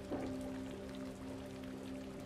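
Quiet background music holding a low, steady chord over the sound of rain.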